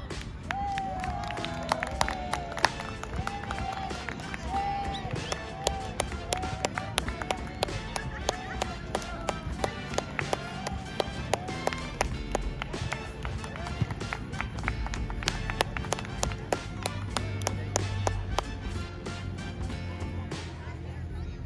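Hands slapping in a line of high-fives, many quick, uneven slaps and claps one after another, with music and voices behind them.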